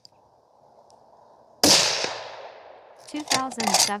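A single shot from a bolt-action precision rifle about a second and a half in, its report ringing out and fading over about a second.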